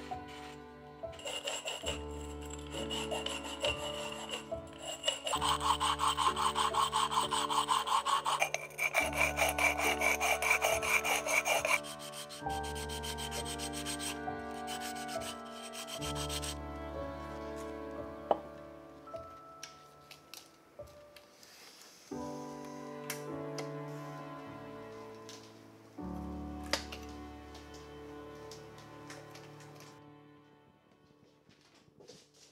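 Sandpaper rubbed quickly back and forth on the cut rim of a glass bottle, partly under water, a fast rasping scrape that smooths off the sharp edges. It is loudest in the first twelve seconds or so and then gets softer, with soft background music of held notes throughout.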